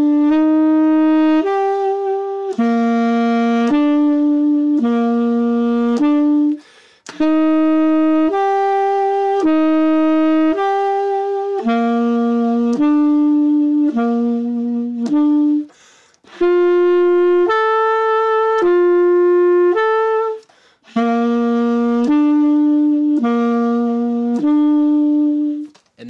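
Tenor saxophone playing held notes one at a time, each about a second long, stepping between the root and major third of each chord through twelve bars of blues changes (written C–E, F–A, G–B), a harmony practice exercise. Short breath breaks come about seven, sixteen and twenty seconds in.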